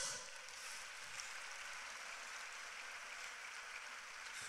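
Faint steady hiss with no speech: room tone picked up by the preacher's microphone during a pause.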